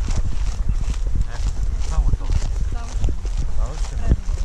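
Quick footsteps through grass while wind rumbles on the camera microphone, with faint distant voices in the middle.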